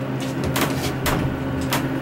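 Steady low hum inside a ThyssenKrupp elevator car, with about five sharp clicks as the car's panel buttons are pressed.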